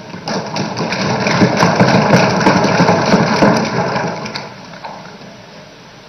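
Many people thumping on their desks in approval, a dense, irregular patter of knocks that swells within the first second, holds, and dies away over the last two seconds.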